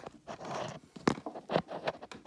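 Handling noise from a phone being moved and propped up: a short rustle about half a second in, then several sharp knocks and taps.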